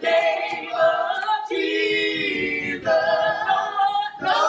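A small group of male and female voices singing a cappella in harmony, holding one chord for over a second in the middle before moving on.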